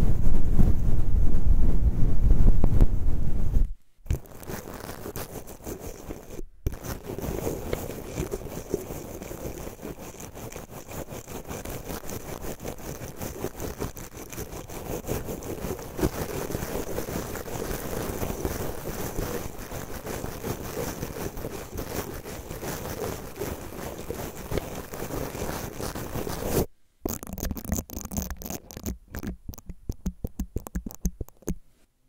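Bristle brushes rubbed directly over a Zoom recorder's microphone capsules. A large soft brush gives a loud, deep rumbling swish for about four seconds. After a brief cut, toothbrush bristles scratch steadily across the mic grilles for about twenty seconds. Near the end come quick, short strokes of a small spiral brush.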